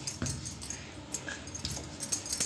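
Wooden rolling pin rolling out paratha dough on a wooden board: a low rumble with a few light knocks as the pin goes back and forth.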